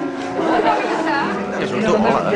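Several people talking at once in a large room, casual crowd chatter. A held musical chord fades out in the first half second.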